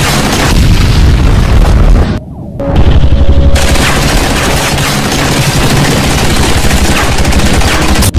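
Film action sound effects: rapid machine-gun fire and heavy booming blasts from attacking helicopters, dense and loud, with a brief drop-out about two seconds in.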